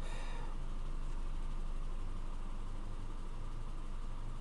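2010 Subaru Forester's flat-four engine idling steadily, heard from inside the cabin as a low, even hum.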